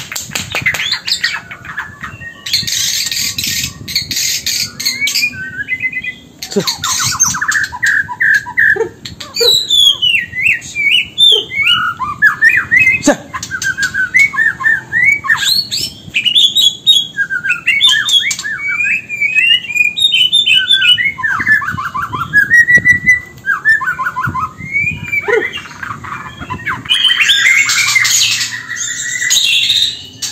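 Caged white-rumped shama (murai batu) singing loudly. The song opens and closes with harsh, rasping phrases, and in between runs a long stretch of fast, varied whistled notes and trills. This is the 'rough material' (materi kasar) that keepers prize in a competition bird.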